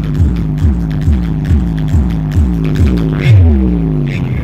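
Loud dance music played through a large outdoor DJ speaker stack, driven by a heavy bass kick about twice a second, with a longer falling bass sweep shortly before the end.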